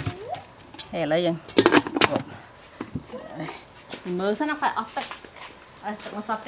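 Crinkling of aluminium-foil packets handled in a metal steamer tray, with a cluster of sharp crackles about one and a half to two seconds in, under a voice talking.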